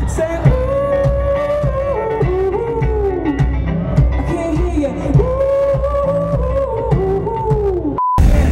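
A man singing live over a strummed acoustic guitar, in two similar phrases of long held notes that bend up and down.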